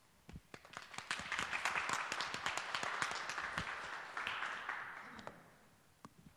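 A small audience applauding: a few scattered claps, building over the first two seconds into steady clapping, then fading out toward the end.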